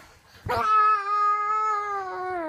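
A child's voice holding one long high note, starting abruptly about half a second in, steady in pitch and then sliding down as it ends.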